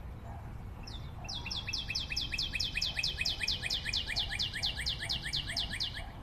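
A rapid, even run of high chirps, about eight a second, each sweeping down in pitch, like a small bird's trill. It starts about a second in and runs on to the end, over a faint steady hiss.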